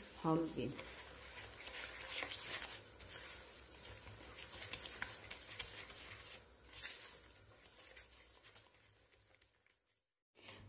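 Silicone spatula stirring and scraping sugar and egg yolks around a plastic bowl, in faint, irregular gritty strokes that thin out near the end.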